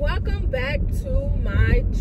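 Steady low road and engine rumble inside a moving car's cabin, under a woman's voice.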